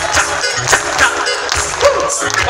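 Live band playing an instrumental passage of a Colombian folk-pop song with a fast, even beat, heard from the audience at an open-air concert.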